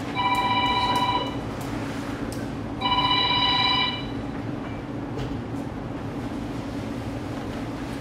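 A telephone ringing: two electronic rings of about a second each, about three seconds apart, then it stops.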